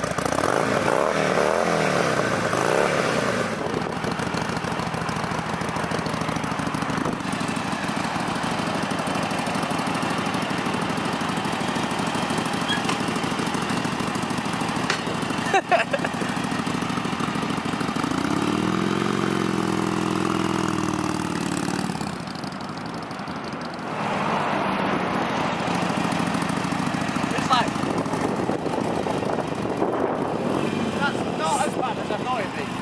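Harley-Davidson 883 Iron's air-cooled V-twin running through a Screaming Eagle exhaust, mostly idling, with the throttle revved about a second in and again about two-thirds of the way through.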